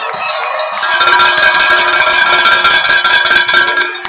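A metal bell clanged rapidly and loudly, swelling about a second in and cutting off near the end, its ringing tone held under the quick strikes.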